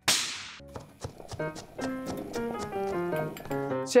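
A sharp whoosh sound effect at the start, fading within about half a second, followed by a short bouncy music cue of quick plucked notes over light percussion.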